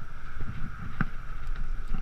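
Wind buffeting and road rumble on an action camera's microphone while riding a bicycle, over a steady high hum. A sharp click about a second in, and a couple of lighter ticks near the end.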